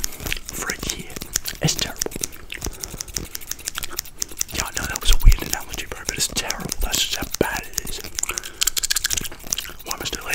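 Close-miked ASMR haircut sounds: a plastic comb and scissors worked right at the microphone, giving dense clicks and scrapes, over soft whispering and mouth sounds. A louder thump on the microphone comes about five seconds in.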